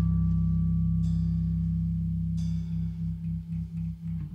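The band's last chord ringing out on electric guitar and bass through their amps, a steady low drone that starts to waver and pulse about two and a half seconds in as it dies away.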